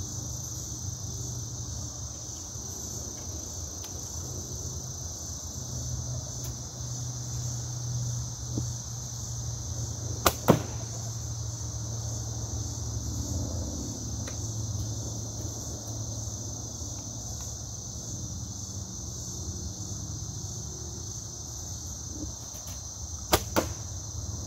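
Compound bow being shot: twice a sharp snap followed a fraction of a second later by a second snap, about ten seconds in and again near the end. Crickets chirr steadily throughout.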